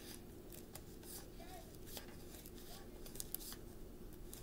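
Faint, scattered clicks and light snaps of tarot cards being handled and drawn from a deck, over a faint steady hum.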